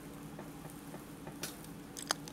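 Faint ticks and crackle of steel forceps working a silk tarantula egg sac open, over a steady low hum, with one sharper tick about one and a half seconds in.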